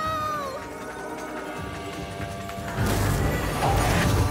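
Cartoon soundtrack music with steady held notes. A long pitched cry fades and drops in pitch in the first half-second. About three seconds in, a loud rushing whoosh with a deep rumble swells in.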